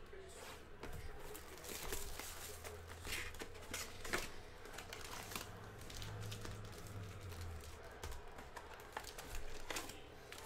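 Plastic shrink wrap on a trading-card hobby box crinkling and tearing as it is slit and pulled off, with scattered small clicks and rustles of cardboard and packs being handled.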